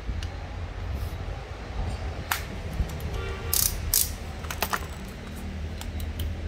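Plastic-bodied cordless drills being handled by hand, with a few sharp clicks and rattles near the middle as the drills and their chucks are turned and gripped; no drill motor is run.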